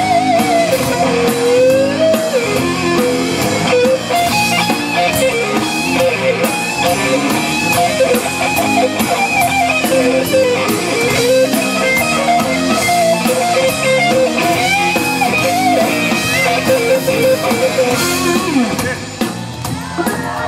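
A live band plays an instrumental soul-blues number: a lead electric guitar with bending notes over organ, bass and a drum kit.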